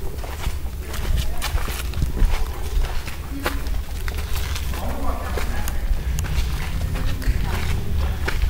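Footsteps of a person walking, with scattered light clicks and a steady low rumble from a handheld camera carried along. Faint voices now and then in the background.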